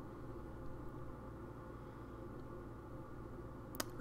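Quiet room tone with a steady low hum, and a single soft click near the end.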